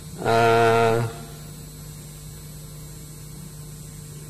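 A man's short, flat, held "eeh" hesitation sound through the chamber's microphone system, lasting under a second, followed by a steady electrical hum.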